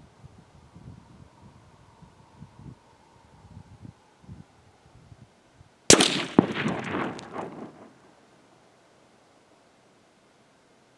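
A single shot from a .204 Ruger rifle: a sudden sharp crack about six seconds in, a second sharp crack about half a second later, and a rumbling tail that fades over about two seconds.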